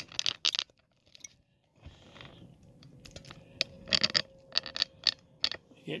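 Handling noise of a camera and its mount being moved and readjusted: a series of sharp clicks, taps and scrapes. There is a short quiet spell about a second in, then a denser run of clicks in the second half.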